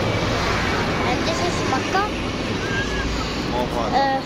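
A steady roar with a strong low rumble, with scattered voices talking in the background.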